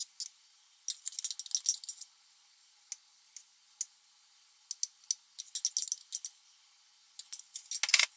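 Metal spoon scraping and clinking against a ceramic baking dish as it spreads thick cake batter. The light, rapid clicks come in short clusters: about a second in, midway, and near the end.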